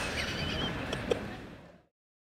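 A woman's laughter trailing off over the steady background noise of a large hall, with one last short laugh about a second in, then the sound fades out to silence near the end.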